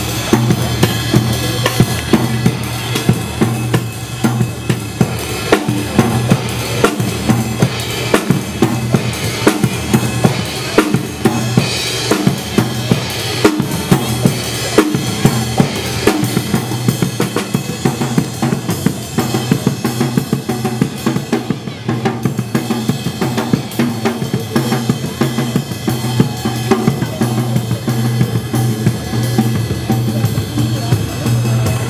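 A drum kit played live with a steady beat of bass drum and snare.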